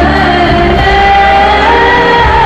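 A church worship group singing a hymn through microphones with musical accompaniment, a woman's voice leading with long held notes.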